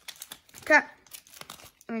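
Clear plastic packaging crinkling in the hands while a folded mini jersey and a cardboard insert are pulled out of it, with irregular small crackles. A short voice sound under a second in is the loudest moment.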